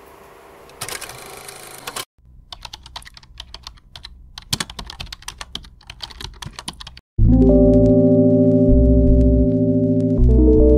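Quick, irregular keyboard-typing clicks, a typing sound effect set against a caption being typed out on screen. About seven seconds in, loud synthesizer music with held chords cuts in.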